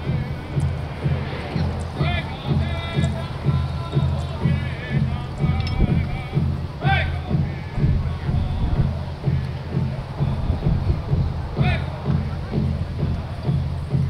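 Powwow drum group singing a memorial song around the big drum: a steady, even drumbeat of about two to three strikes a second under high voices with a wavering pitch.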